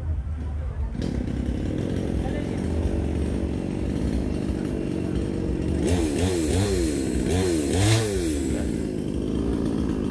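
Petrol chainsaw running at idle, then revved up and down four times in quick succession about six seconds in.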